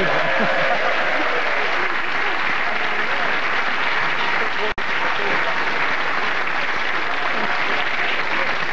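Studio audience applauding and laughing, steady throughout. The sound briefly cuts out just before five seconds in.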